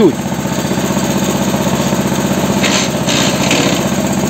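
Homemade mini tractor's engine running steadily with an even, rapid firing beat while the tractor eases backward with its loaded trailer.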